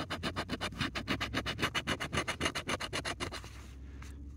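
A coin scratching the latex coating off a paper scratch-off lottery ticket in quick back-and-forth strokes, about nine a second, stopping about three and a half seconds in.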